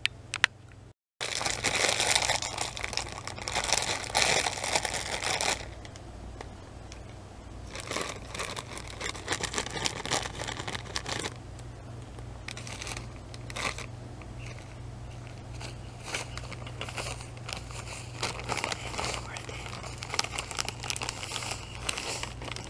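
Plastic bag of cornbread muffin mix crinkling as it is handled and squeezed. It is loudest for a few seconds after a brief break about a second in, then comes in intermittent crinkles over a low steady hum.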